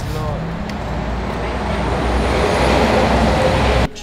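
A motor vehicle's engine running with a steady low rumble, its noise swelling toward the end before it cuts off abruptly.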